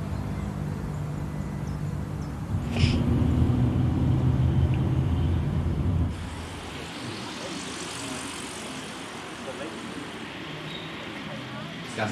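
A motor vehicle engine running with a steady low drone, which gets louder with a short hiss about three seconds in. At about six seconds it gives way to quieter, even road noise inside a moving car.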